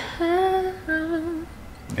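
A woman humming two held notes, about half a second each, the second a little lower and wavering slightly.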